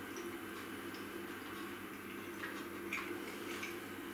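Faint mouth sounds of a man chewing a bite of steak, a few soft irregular clicks over a steady low hum.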